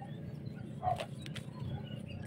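Faint outdoor background with one short, low bird call about a second in.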